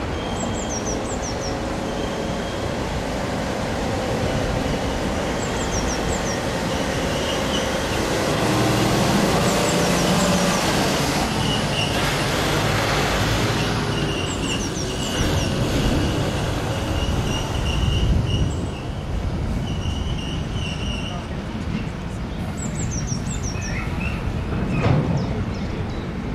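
A long train of loaded-style hopper wagons rolling slowly past, wheels running over the rails with a steady rumble and a thin wheel squeal that comes and goes, strongest in the second half. Short high chirps recur every few seconds.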